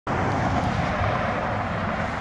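Road traffic passing at an intersection: a steady rush of car engine and tyre noise.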